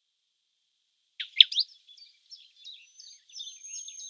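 Silence for about a second, then a songbird singing: a few loud, sharp high notes, followed by quieter rapid chirps and short whistles.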